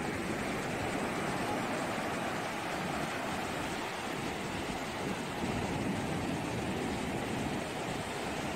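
Ocean surf washing onto a sandy beach, a steady rushing noise.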